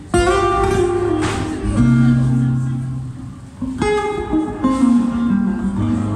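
Steel-string acoustic guitar played solo as a song's intro: a chord struck right at the start rings out under held notes, and a fresh strike comes about four seconds in.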